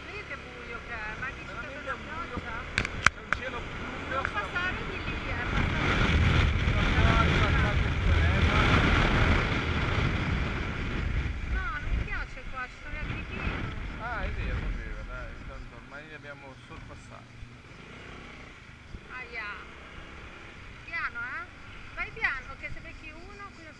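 Honda SH300 scooter's single-cylinder engine running on the move, with wind rushing over the microphone; the noise swells loudest in the middle, then eases off. Two sharp clicks about three seconds in.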